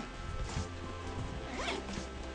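Zipper on a small semi-hard carrying case being pulled, one quick rising zip about one and a half seconds in, over steady background music.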